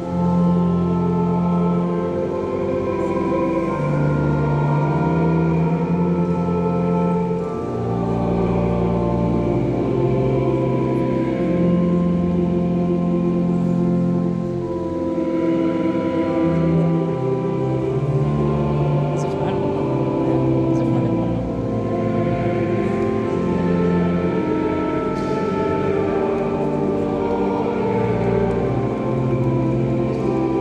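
Church organ playing a slow hymn in sustained chords that change every second or two.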